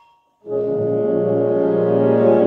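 Wind ensemble in live performance: the last ring of a struck mallet-percussion note dies away, and about half a second in the full band enters together on a loud held chord, weighted toward the low and middle voices.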